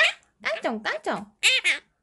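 Quaker parrot (monk parakeet) giving three short, gliding, high-pitched speech-like bursts in its mimicking voice, imitating a line of a sung children's song.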